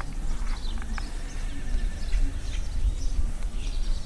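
Wind buffeting the microphone in a low, uneven rumble, with faint bird chirps over it.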